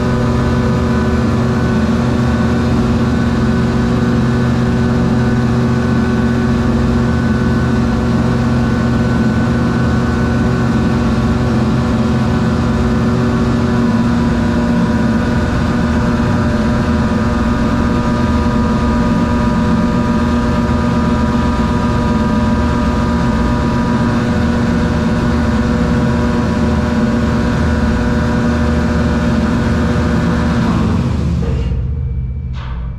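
Deck crane's hydraulic drive running steadily: a loud, constant machinery hum with several steady tones, one of which drops out about halfway through.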